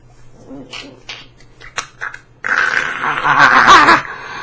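A man's drawn-out, wavering groan of frustration, muffled by the hands over his face. It starts suddenly about two and a half seconds in, after a few faint breaths and mouth clicks.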